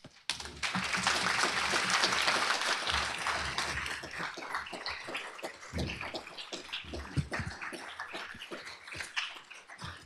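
Audience applauding after a talk, starting suddenly, loudest over the first few seconds and then tapering off, with a few low thumps near the middle.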